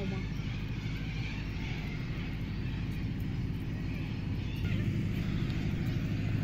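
Steady low engine hum in the distance under outdoor background noise, growing louder about four and a half seconds in.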